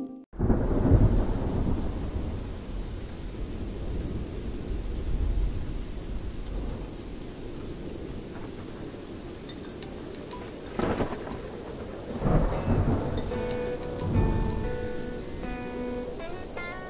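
Steady rain with rolling thunder. Deep rumbles swell just after the start and again several times in the second half. Music notes come in over the storm near the end.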